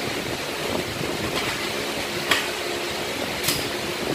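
Steady fan-like hum with two sharp clicks about a second apart, from steel putty knives knocking and scraping against each other and the bucket lid as putty is worked on the blades.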